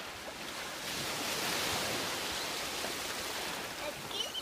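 Shallow sea surf washing in around the legs, a steady rush that swells about a second in and eases near the end.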